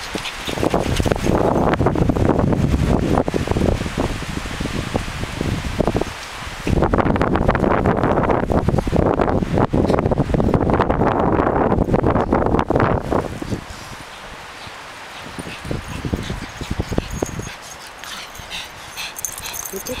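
Small dogs playing and running on sandy ground, heard under a loud, low rushing noise on the microphone that comes in two long stretches and then drops away for the last several seconds.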